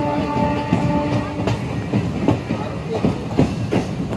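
Moving passenger train: the wheels clack and knock over rail joints over a steady running rumble, heard from an open coach door. A steady tone sounds over it and dies away about a second and a half in.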